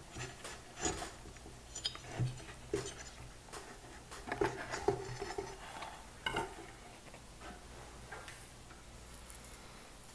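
Light knocks, clicks and scrapes as the metal amplifier plate of a Yamaha HS7 studio monitor is worked loose and lifted out of its cabinet; the knocks are busiest in the first six seconds and thin out after that.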